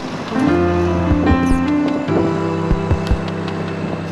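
Background music: sustained chords over a low, thudding beat, the chords changing about half a second in and again about two seconds in.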